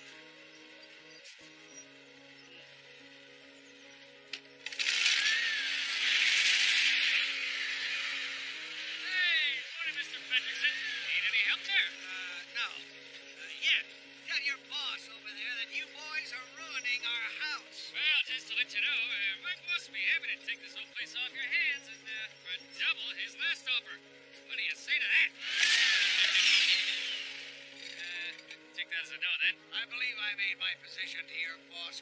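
Film soundtrack music with sustained chords that change every few seconds. From about five seconds in, a loud, busy layer of high gliding and fluttering sound effects joins it, strongest near the start of that stretch and again near the end.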